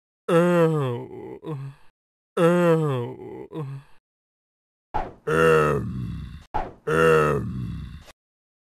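Cartoon character voices: four drawn-out vocal calls in two pairs, each held about a second and sliding in pitch, with short silences between. These are the animated alphabet letters K and then L voicing themselves, the original and the crying-baby version of each.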